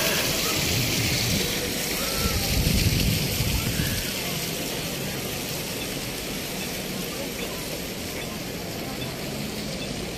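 Steady splashing of small fountain water jets under the murmur of a crowd talking, with a car going by close, its low rumble loudest about two to four seconds in.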